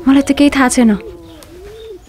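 A voice speaks quickly for about the first second, then a faint, low cooing, like a pigeon, rises and falls once in the background.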